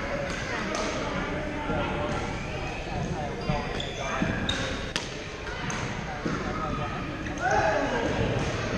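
Badminton play on a gym floor: scattered sharp racket strikes on shuttlecocks, with short squeaks of court shoes, over the chatter of players.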